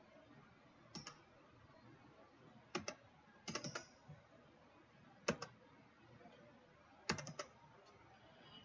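Faint clicks from a computer keyboard and mouse: single clicks and short runs of keystrokes, spaced a second or two apart, as an IP address is entered into a form field.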